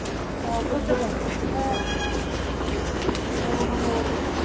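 Busy city street ambience: a steady low rumble of traffic with scattered distant voices.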